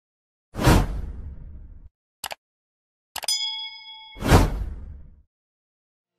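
Title-animation sound effects: a sudden swoosh-like hit with a deep tail that fades over a second or so, a short click, then a ringing ding about three seconds in, cut off by a second, louder swoosh-like hit that dies away about a second later.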